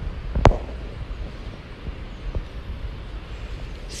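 Open-air background rumble and hiss, with a single sharp knock about half a second in.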